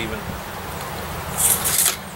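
Steel tape measure blade retracting into its case, a short hissing rattle about one and a half seconds in, over a steady low rumble.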